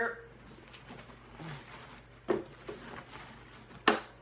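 Rummaging in a guitar case's accessory compartment and pulling out a guitar strap: soft handling rustle, with a sharp knock about two seconds in and another just before the end.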